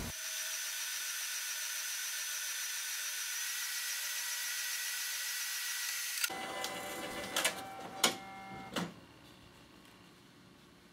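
Epson Stylus Pro 4000 inkjet printer printing: a steady high whine of the print mechanism for about six seconds, then a sudden change to a fuller mechanical sound with three sharp clicks as the sheet feeds out, dying away near the end.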